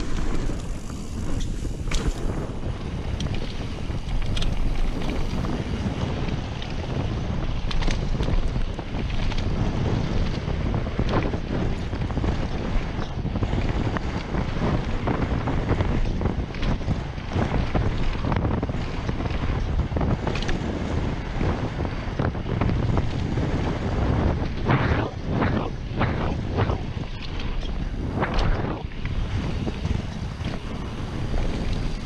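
Wind rushing over a chest-mounted action camera's microphone on a fast mountain bike descent, mixed with the tyres rolling over dirt and the Trek Slash rattling over bumps. A run of sharp clattering knocks comes a few seconds before the end.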